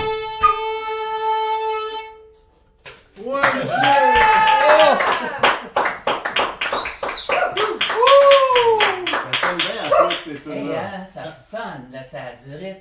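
Fiddle and wooden flute holding the final note of a traditional dance tune for about two and a half seconds, then stopping. From about three seconds in, hand clapping with whoops and cheers, giving way to voices near the end.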